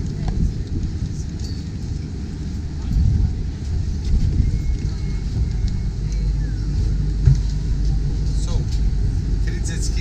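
Wind buffeting the microphone: a steady low rumble, with one brief knock about seven seconds in.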